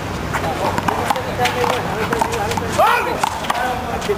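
Rally in one-wall handball: repeated sharp slaps of the small rubber ball off bare hands and the concrete wall, at irregular intervals, mixed with short gliding squeaks and shouts from the players on the court.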